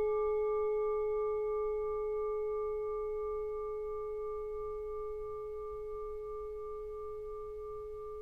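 A singing bowl ringing after a single strike: one steady low tone with fainter higher overtones, slowly fading away.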